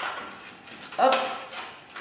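A single spoken 'hop' about a second in, over a faint rustle of fingers rubbing oil into a small pleated disposable mould.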